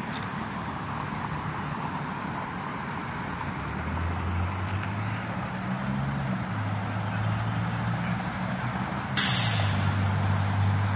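Fire engine's diesel engine idling, a low hum that grows louder from about four seconds in, over a wash of road traffic. Near the end comes a sudden loud hiss of compressed air from its air brakes, lasting under a second.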